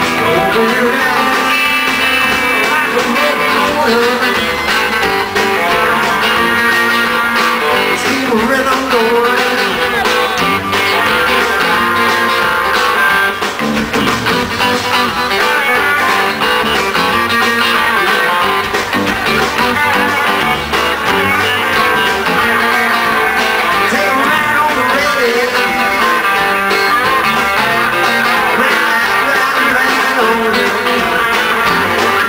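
Live rock band playing an instrumental stretch with no vocals: electric guitars over electric bass and drums.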